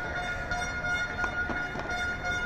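Padel balls being struck, a few sharp hits about a quarter-second apart in the second half, over a steady high-pitched tone with overtones that is the loudest thing throughout.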